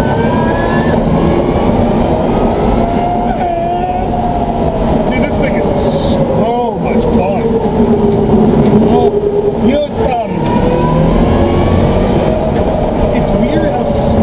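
Electric drive whine from the BMW M3 race car's twin 11-inch Warp electric motors, heard inside the cabin over road and tyre noise. The pitch rises with speed, sinks slowly as the car eases off, dips briefly about ten seconds in, then climbs again near the end.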